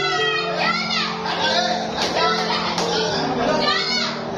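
Excited shouting and cheering from several young voices, over background music with sustained low notes.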